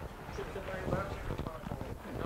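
A quiet pause filled with faint, scattered voices and a few soft footsteps on cobblestone paving.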